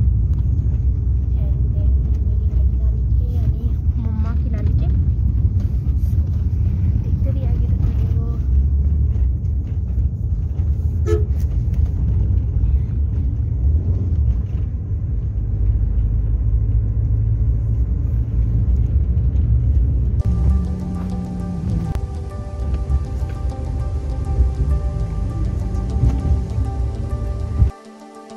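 Steady low rumble of road and engine noise inside a moving car, heavy on the phone's microphone. About two-thirds of the way through, background music joins in. Just before the end the car noise cuts off, leaving only the music.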